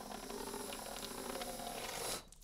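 Water forced out of a drinking straw in a spray by hard blowing into a cup sealed against the face: a steady rush of noise that starts suddenly and stops after about two seconds.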